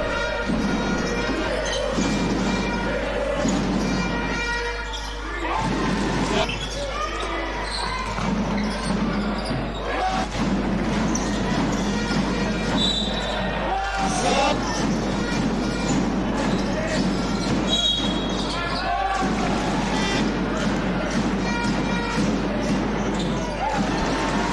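Live basketball game sound in an arena: a basketball bouncing on the court amid steady crowd noise.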